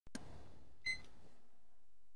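A click, then a short high electronic beep about a second in.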